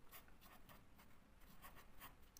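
Faint scratching of a felt-tip marker writing on paper, in a series of short strokes.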